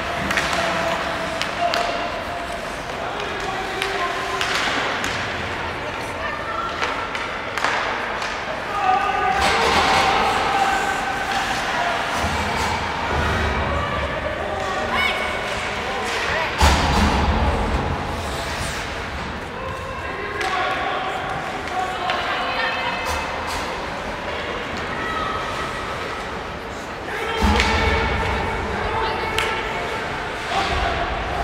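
Ice hockey game heard from the stands of an indoor rink: spectators' voices and chatter throughout, with a few heavy thuds against the boards, the loudest a little past halfway and near the end.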